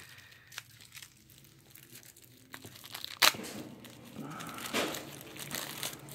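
Clear plastic packaging crinkling and rustling as board game cards are handled, with scattered small clicks and one sharp snap a little past three seconds in.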